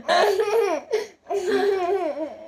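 A woman and a young boy laughing together in two bouts, with a short break about a second in.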